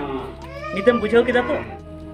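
Voice over steady background music, with a sliding, drawn-out pitched sound in the first second.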